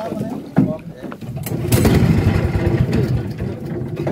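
A canoe's small outboard motor, set on choke, catching with a sharp burst about one and a half seconds in and then running at low speed.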